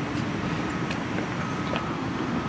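Steady low rumble of a motor vehicle engine running, with a faint thin whine coming and going.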